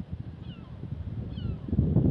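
Wind buffeting the microphone, a low rumble that strengthens near the end, with faint short falling bird calls twice.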